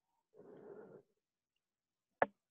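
Near silence broken by one faint, breathy exhale from a person close to the microphone, lasting just over half a second.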